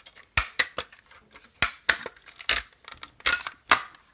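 Hard plastic toy parts of a G1 Powermaster Optimus Prime trailer clicking and snapping as its hinged panels are folded and pushed into place by hand: about ten sharp, irregular clicks.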